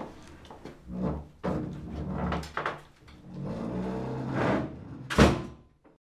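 Shuffling movement and light knocks, then a door shut with a loud thud about five seconds in.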